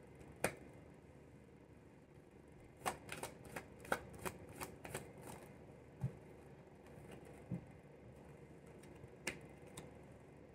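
Tarot deck being shuffled by hand, faint and intermittent: scattered sharp card clicks, with a quick run of them between about three and five seconds in. Two soft low thumps come a little later.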